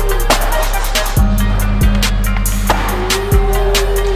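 Music with a steady drum beat over the sound of a skateboard: a board popping and landing a trick on the concrete floor of a skatepark, then wheels rolling.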